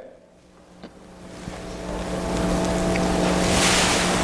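Steady electrical hum with a broad hiss, faint at first and swelling over about two seconds to a fairly loud, even level. It is the kind of hum and hiss a church sound system or recording chain brings up in a pause between speech.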